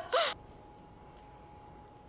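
A person's short gasp at the very start, then only faint steady background noise with a thin constant hum.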